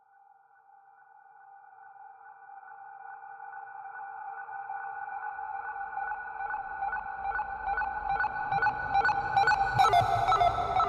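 A steady electronic tone of a few held pitches fading in from silence and slowly growing louder, joined about halfway by regular pulses about two a second and a low rumble: the intro of a noise-punk track.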